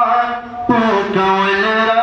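A man's voice chanting a Pashto naat in long, held melodic notes. The voice drops away briefly about half a second in and comes back in just after.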